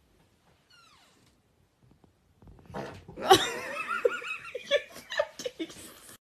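A faint short falling-pitch vocal sound about a second in, then from about three seconds in loud, high-pitched laughter in quick pulses with a wavering pitch.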